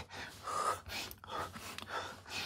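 A man's hard, strained breathing while working an ab roller: a few short, forceful breaths in quick succession.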